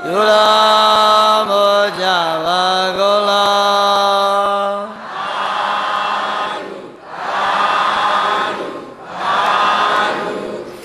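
A Buddhist monk chanting into a microphone, holding long drawn-out notes for about five seconds. Then three long swells of many voices in unison follow, as a congregation answers the chant.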